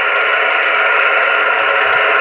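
Steady hiss of an SSB satellite transceiver's receiver noise with no signal in it. The RS-44 satellite has just dropped below the horizon at loss of signal.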